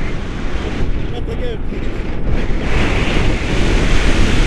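Airflow buffeting the microphone of an action camera held out on a pole from a tandem paraglider in flight: a loud, steady rushing noise, strongest in the lows, growing brighter near the end.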